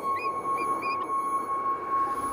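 Bald eagle calling: a quick series of short, high chirps through the first second. Under it runs a steady held tone from soundtrack music.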